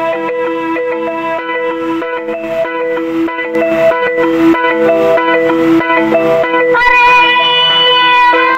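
Yamaha PSR-S electronic keyboard playing a repeating plucked, xylophone-like melodic figure as an instrumental intro. Near the end a woman's voice comes in on a long held sung note.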